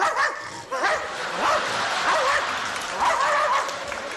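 A man yelping and whimpering in short pitched cries, imitating a dog, with a theatre audience's noise behind him.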